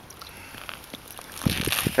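Rustling of a heavy winter jacket and crunching snow as a man kneels at an ice-fishing hole and hand-pulls line, with a few louder knocks and scuffs near the end.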